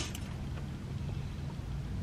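Steady low hum inside a parked car's cabin, with no distinct sounds over it.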